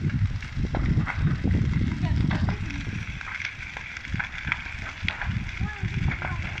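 Wooden buildings burning in a large open fire: a continuous low rumble with frequent sharp crackles and pops.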